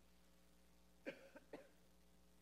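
Near silence with a faint steady hum, broken by two brief faint coughs about a second in, half a second apart.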